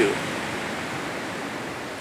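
Steady rush of ocean surf, an even hiss with no distinct events.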